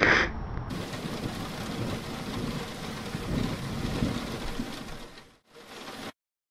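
Recorded close thunderstorm: heavy rain with low rolling thunder, starting suddenly under a second in. It drops out briefly near the end and then stops.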